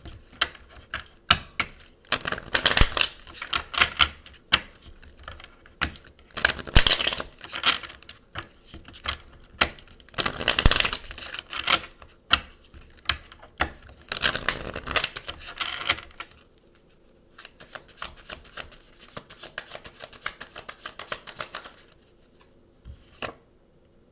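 A deck of oracle cards being shuffled by hand: bursts of rapid clicking and fluttering from the cards, then a lighter run of fast ticks later on.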